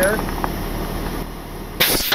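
A truck engine idling, then near the end a sudden loud blast of compressed air that turns into a fading hiss: a trailer air-brake line let go at its quick coupler as the collar slipped in the hand. The air dumping from the line sets the trailer's brakes.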